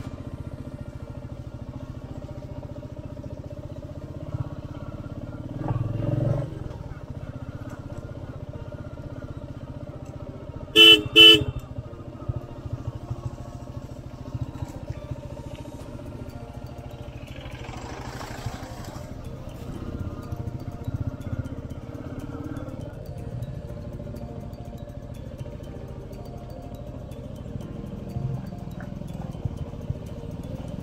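Motorcycle engine running steadily at low speed over a rough dirt road. A horn gives two short, quick honks about eleven seconds in, the loudest sound here.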